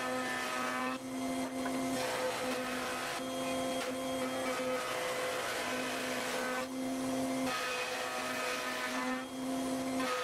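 Router table with a raised-panel bit cutting a sapele panel: a steady motor whine whose tone weakens and returns every second or two as the board is fed past the cutter.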